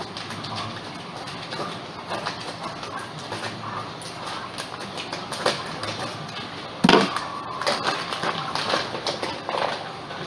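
Clear plastic fish-shipping bag crinkling and rustling as hands handle it, with a sudden louder crackle and a short squeak about seven seconds in.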